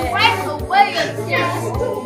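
Children's excited voices over background music with a steady beat.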